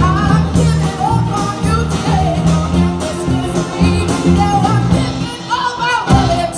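Live band playing an original song: a woman sings lead over electric guitar, acoustic guitar, a drum kit with cymbals, and bass.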